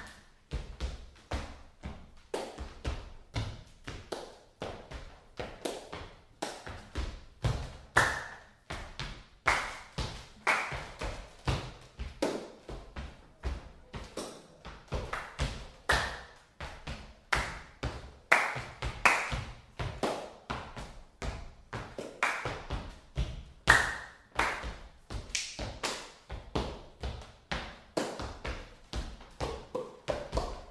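Solo body percussion: sneakered feet stomping and tapping on bare wooden floorboards, mixed with hand claps, in a steady rhythm of several strikes a second.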